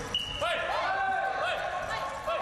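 Blindfolded blind-football players repeatedly shouting "voy" (ボイ). Several short calls overlap from about half a second in. The players call it so that others know where they are, since they cannot see each other, and it prevents dangerous collisions.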